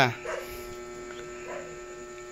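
A steady electrical hum held on one low pitch, after the tail of a spoken word at the very start.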